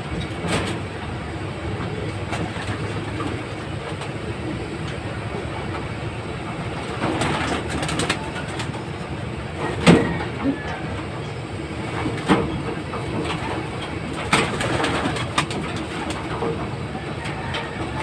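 Racing pigeons cooing in a loft, with a few brief knocks and rustles from the birds or the pen.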